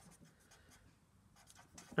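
Felt-tip marker writing on paper in short, faint strokes.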